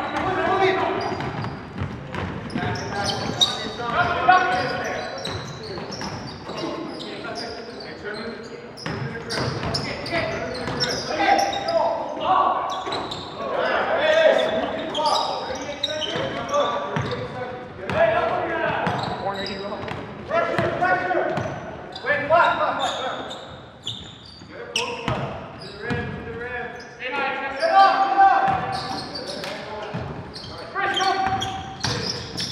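Indistinct shouts and calls of players echoing in a gymnasium during a basketball game, with a basketball bouncing on the hardwood floor.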